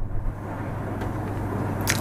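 Pause between speech: steady background noise with a low, constant hum, the studio's room tone.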